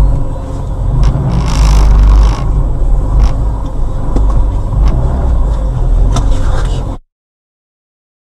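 Car engine and road rumble picked up by a dashcam inside the cabin, steady and low, with a few sharp clicks and a short hissing burst about a second and a half in. The sound cuts off abruptly near the end.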